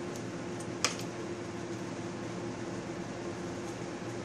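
Steady kitchen hum with a faint constant tone, like a fan running, and one light click about a second in.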